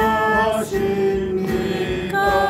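A man singing a Korean praise song to his own acoustic guitar, holding long notes: one held note gives way to a second, long-held note just over half a second in.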